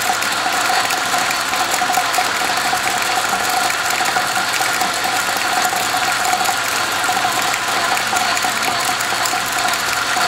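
1927 South Bend 9-inch metal lathe running, driven by its 1/3 HP electric motor through the belt and pulleys: a steady mechanical clatter of spindle, belts and gears with a rapid flutter, unchanged throughout.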